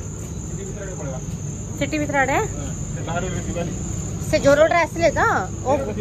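A steady high-pitched chorus of crickets, with short snatches of a person's voice over it about two seconds in and again around the fifth second.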